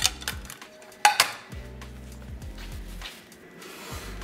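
Dinner plates clinking: a sharp clink at the start and a louder one with a short ring about a second in, over background music with a low bass beat.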